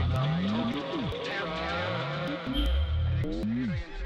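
Electronic music: deep synth bass notes sliding up and down in pitch, with a few arcing sweeps under a dense layer of warbling tones.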